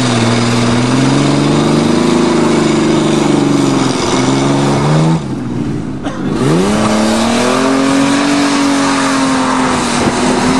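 A Ford vehicle's engine revving hard and held at high revs under load on a steep off-road hill climb; about five seconds in the revs drop off sharply, then rise again and hold high.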